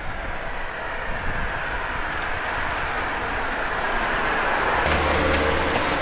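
Steady engine and road noise of a passing vehicle, slowly growing louder over about five seconds. Near the end it gives way to a low, steady hum.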